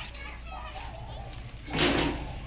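Faint voices of several people talking outdoors over a low steady rumble, then a short loud burst of hiss near the end.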